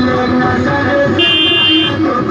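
A car horn sounds once, a steady high multi-tone blast of under a second, starting a little past the middle, over loud music playing throughout.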